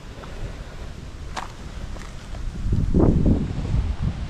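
Wind buffeting the microphone in a low rumble, swelling into a stronger gust about three seconds in, with a single light click about a second in.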